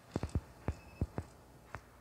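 Light mechanical clicks of the buttons and encoder knobs on a Teenage Engineering OP-1 synthesizer being worked by hand, about seven short taps at irregular intervals.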